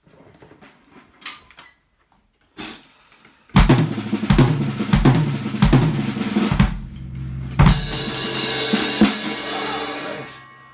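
Faint shuffling and clicks, then about three and a half seconds in a jazz drum kit phrase starts: evenly spaced bass drum strokes under snare and tom hits, a soloing figure in a three feel played over four. Past the middle a cymbal crash rings out over ride cymbal strokes and fades near the end.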